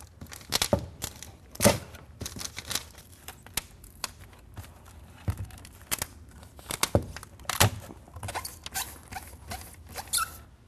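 Tyvek housewrap and Tyvek sheathing tape rustling and crinkling in irregular sharp bursts. The tape is pulled off its roll and pressed down over the folded flap around a metal dryer vent.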